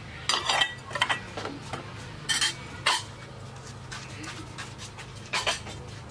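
Plate and metal spoon clinking against each other and the tableware, several separate short clinks over a few seconds.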